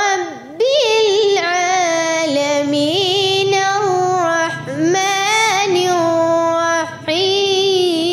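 A young girl's voice reciting the Quran in a melodic chant, holding long, ornamented notes with short breaths in between.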